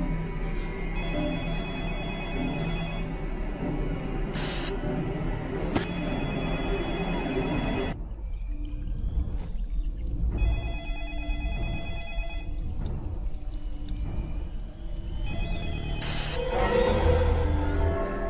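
Film soundtrack: a telephone ringing repeatedly in bursts of about two seconds over tense, dark film music, which swells near the end.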